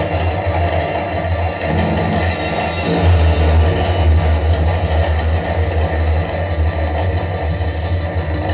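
Live band playing loud amplified music, with a heavy sustained bass that swells about three seconds in under a dense wash of sound.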